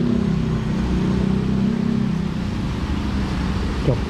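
Honda NC750X parallel-twin engine idling steadily at the roadside, its note easing down slightly in the first half-second.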